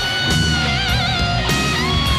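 Hard rock band with a lead electric guitar solo: a long held high note that goes into a wide, wavering vibrato about a second in, then bends, over bass and drums.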